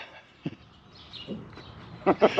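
Faint outdoor ambience with a few high bird chirps and a single sharp click a little before halfway.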